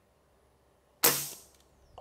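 A single shot from a scoped air rifle about a second in: a sudden sharp report that dies away within about half a second.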